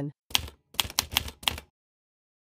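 Typewriter keystrokes: a quick run of about eight sharp clacks over a second and a half.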